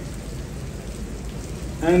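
Steady background hiss during a pause in a man's speech over a microphone, with his voice coming back in near the end.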